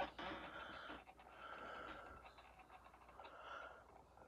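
Faint breathing close to the microphone, opening with a short click, then a slow, soft exhale that fades out near the end.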